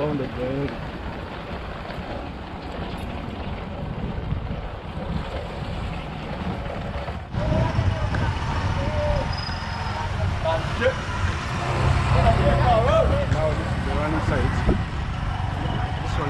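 Motorcycle taxi running along the road with wind rushing over the microphone, a steady low rumble that gets louder about seven seconds in.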